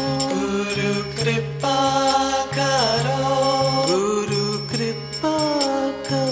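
Devotional Hindi bhajan: a melodic vocal line with gliding, ornamented notes sung over a steady drone and instrumental accompaniment, with light high percussion ticks keeping time.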